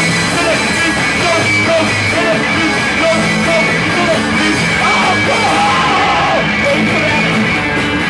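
Live punk rock band playing loudly, with electric guitars and a drum kit, and shouted vocals in places.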